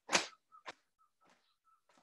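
A short swish and then a faint sharp click, from a person shaking his arms and body in short, sharp movements.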